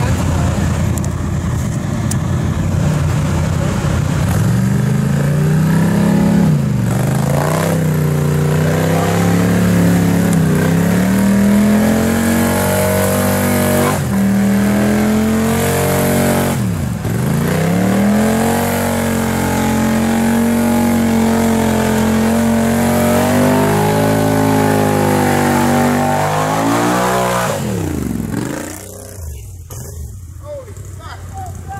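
An ATV engine revs hard under load, stuck in thick mud. The revs are held high for long stretches, with several deep drops and climbs back up, and the engine cuts back sharply near the end.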